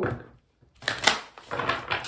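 A deck of oracle cards being shuffled by hand: after a brief pause, a quick run of crisp card slaps and rustles fills the second half.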